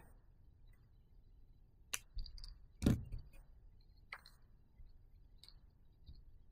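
A few small, sharp clicks and one louder soft knock from hand tools and wire being handled and set down on a workbench, among them the flush cutters used to cut heat shrink.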